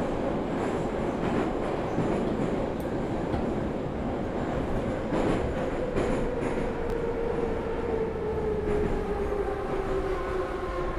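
Train running: a steady rumble with a few faint clacks, and a whine that slowly falls in pitch over the last few seconds.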